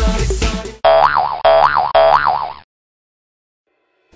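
Music that stops just under a second in, followed by a cartoon-style boing-like sound effect whose pitch wobbles up and down. The effect plays three times back to back, then the sound cuts off suddenly to silence.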